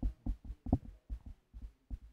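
Muffled, distant speech of a person talking away from the microphone, carried with low thumps in an uneven rhythm of a few pulses a second.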